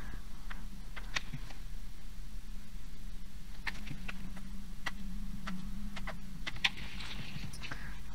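Faint, scattered soft clicks and ticks from fingers working wet acrylic paint into yarn strands on a plastic sheet, about ten of them spread unevenly, over a steady low electrical hum.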